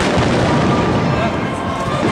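Fireworks going off in quick succession: a dense run of bangs and crackling.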